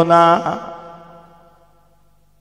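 A man chanting a sermon line in a melodic, sung style, holding a steady note that ends about half a second in, followed by an echoing tail that fades out over the next second.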